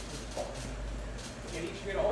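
Camera shutters clicking now and then over room murmur during a press photo call. A man's voice comes in near the end.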